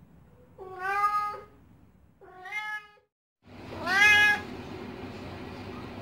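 Black-and-white domestic cat meowing three times, short drawn-out calls about a second apart, the third the loudest.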